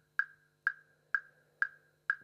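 Sampled woodblock in GarageBand's Beat Sequencer (Coffee Shop percussion kit) playing a steady click track, one strike on each beat. Four identical short, bright knocks come about two a second, each dying away quickly.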